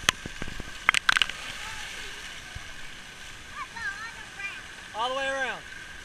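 Steady hiss of water spraying from splash pad fountains and jets, with a few sharp clicks about a second in and a voice calling out near the end.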